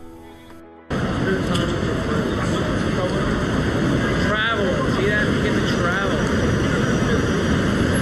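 Busy city street at night: a steady rumble of traffic noise with faint voices mixed in. It starts abruptly about a second in.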